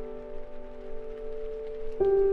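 Soft background piano music: a chord held and slowly fading, with no new note struck until just after the end.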